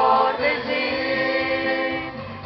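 Mixed choir of young men and women singing a gospel song in Romanian, holding a long chord from about half a second in.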